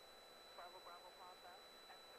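Near silence over the aircraft's radio audio: a faint, distant-sounding voice starts about halfway in, with a steady high-pitched electronic tone beneath it.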